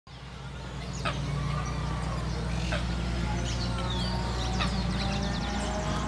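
Scattered bird chirps and short calls over a steady low hum, with a quick run of rapid high notes near the end.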